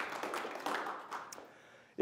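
Audience applause fading out over about a second and a half.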